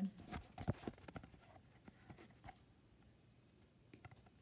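Light handling taps and rustles over the first two and a half seconds or so, then faint room tone.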